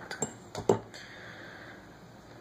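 A few light metallic clinks and taps, about four in the first second, from handling a soldering iron and thin wires at the bench.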